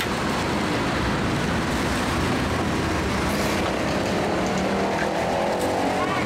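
Steady, loud rushing noise with no pauses, with faint voices coming in near the end.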